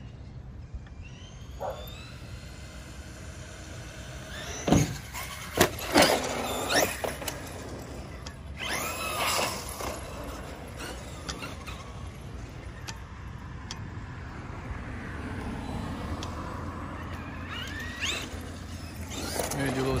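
Electric RC monster truck (Traxxas Revo 2.0) driving on asphalt: its motor whine rises and falls with the throttle, with tyre squeal as it turns. A few sharp knocks come about five to six seconds in.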